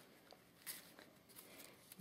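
Near silence, with faint, brief rustles of a cotton handkerchief and ribbon being handled.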